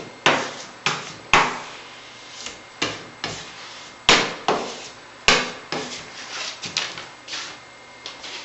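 Hand-sanding of a Venetian plaster wall with a sheet of sandpaper: about a dozen short scraping strokes at an irregular one or two a second, each starting sharply and quickly fading.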